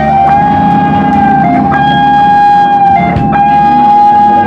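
Live blues band playing with electric guitar, a long high note held over the band.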